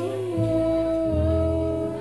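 Live acoustic band playing a song. Long sung notes are held over acoustic guitar, and a low note comes in about a second in.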